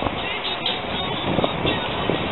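Outdoor public-space ambience: faint, indistinct voices of people nearby over a steady background noise.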